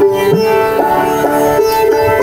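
Live Indian instrumental ensemble playing a melody: a bansuri flute line holds a long note with short slides between pitches, over sitar, harmonium and tabla.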